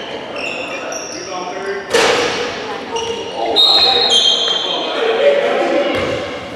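Basketball sneakers squeaking on a hardwood gym floor in many short, high squeals, with one sharp ball bounce about two seconds in, echoing in the gym.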